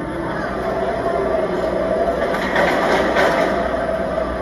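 Megasaurus, a car-crushing robot dinosaur on tracks, running with a steady mechanical drone as its hydraulic jaws chew on a car, with the grinding and crunching of the car's metal.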